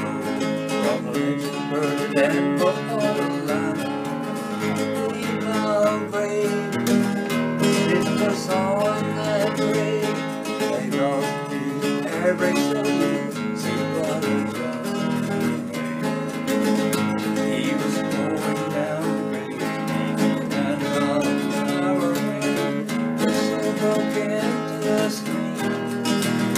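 Acoustic guitar strummed and picked steadily through a country song's instrumental break.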